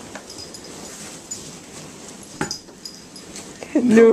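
Polystyrene foam packing peanuts in a cardboard box rustling and squeaking as cats shift and climb about in them, with a sharper crackle about halfway through.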